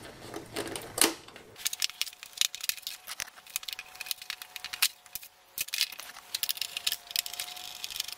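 Quick runs of small clicks and rattles from plastic and metal parts being handled: a TV's control-button module is being unclipped and its cable worked free against the steel back panel.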